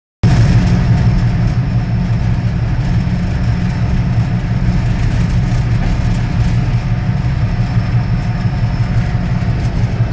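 Diesel locomotive engine running steadily under way, a loud, low, even drone, heard close beside the engine compartment.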